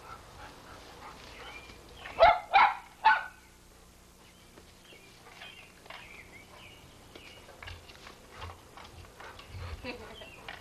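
A dog barks three times in quick succession, a couple of seconds in.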